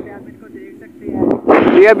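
Low rumbling wind and road noise on the microphone while travelling along a street, then a man starts speaking about a second and a half in.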